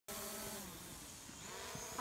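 Small quadcopter drone flying overhead, its propellers giving a steady buzzing hum that wavers slightly in pitch.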